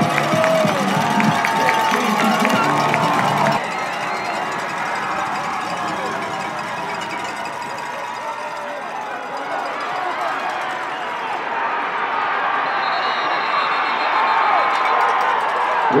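Football stadium crowd: a steady hubbub of many voices and cheering. Music plays over it for the first three and a half seconds, then stops abruptly.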